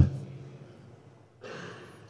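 A man breathing in audibly through a close microphone, an intake of breath about one and a half seconds in, after a short pause that opens with a single sharp click.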